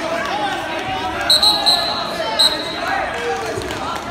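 Short, shrill referee's whistle blasts, three quick ones about a second in and another a moment later, stopping the wrestling action, over steady spectator chatter.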